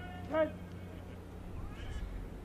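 A short shouted military drill command, one drawn-out call under half a second long whose pitch rises then falls, over a low steady hum.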